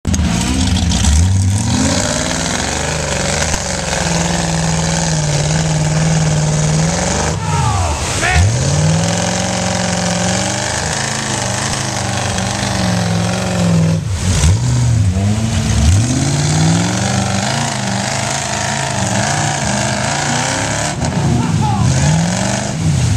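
Ford 429 big-block V8 in a mud buggy working hard under load, its revs dropping sharply and climbing again several times as it churns through deep mud.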